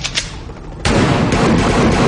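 Gunfire: two sharp shots right at the start, then a loud burst of rapid fire from about a second in.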